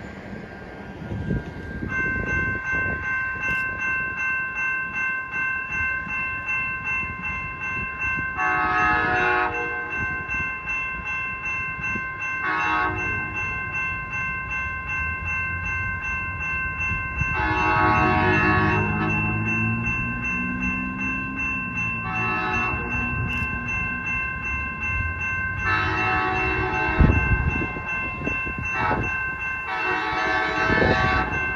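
A grade-crossing bell starts ringing about two seconds in, steady and pulsing. Over it, an approaching Amtrak train's Siemens SC44 Charger locomotive sounds its horn for the crossing in about five long and short blasts.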